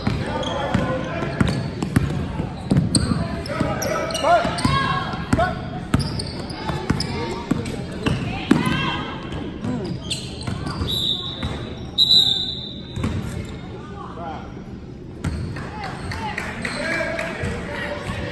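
Spectators talking and calling out over a youth basketball game in a gym, with the ball bouncing on the hardwood court. A referee's whistle sounds twice in quick succession a little past halfway through.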